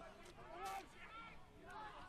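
Faint, distant voices over low background noise.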